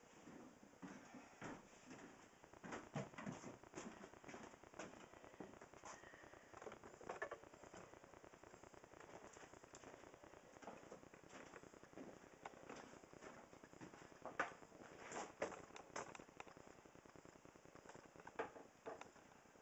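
Faint handling noise at near-silence level: scattered light clicks and rustles, coming in small clusters, the loudest about fourteen to sixteen seconds in.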